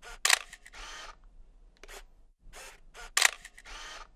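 Camera shutter sound effect: a sharp shutter click followed by a longer rasping wind-on, heard twice about three seconds apart.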